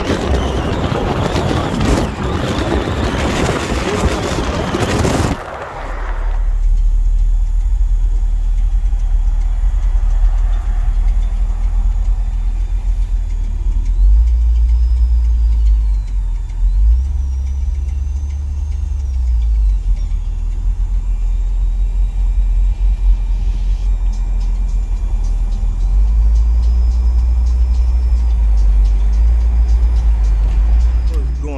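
Outdoor traffic and wind noise for the first five seconds or so, then the low, steady rumble of a moving car heard from inside, with deep bass tones that shift every few seconds.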